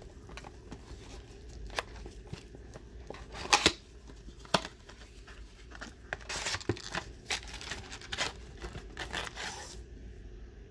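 Plastic shrink-wrap being torn off a cardboard trading-card blaster box, then the box opened and the foil card packs pulled out. A run of crinkling and rustling with scattered sharp crackles, the loudest about three and a half seconds in.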